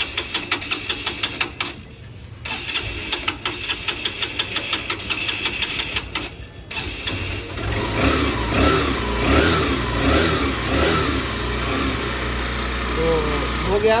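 Honda CB Shine 125's single-cylinder four-stroke engine being cranked on the electric starter in two bursts of rapid, even chugging, catching about seven seconds in, revved up and down a few times, then settling into idle. It is a cold morning start on choke: the mechanic explains that the carburettor mixture is set lean for fuel economy, so the engine needs choke to start when cold.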